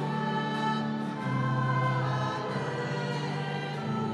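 Choir singing a slow church hymn in long held notes, the pitch shifting to a new note about every second.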